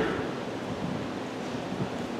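A pause in speech filled by steady hiss of room tone, picked up by the pulpit microphone.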